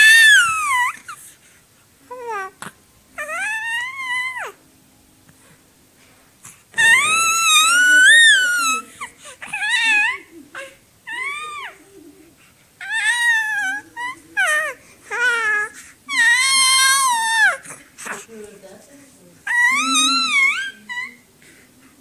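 Infant crying: a string of high, wavering wails, each a second or two long, with short pauses between them.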